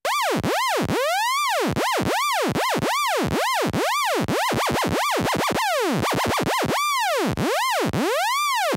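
Phase Plant software synth playing a sawtooth lead whose pitch swoops from very low to high and back, over and over. A sine LFO bends the pitch while a random modulator changes that LFO's speed, so the swoops come sometimes slow and sometimes quick, quickest a little past the middle: a random psychedelic psytrance lead effect.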